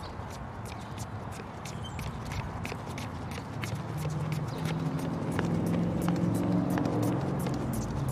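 Running boot footfalls, about three a second, on pavement, with rucksack and rifle gear jolting at each stride. From about four seconds in, a low sound of several steady pitches grows louder and fades near the end.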